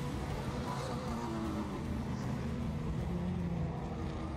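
Off-road race truck engines running at a distance, a steady drone whose pitch shifts slowly up and down.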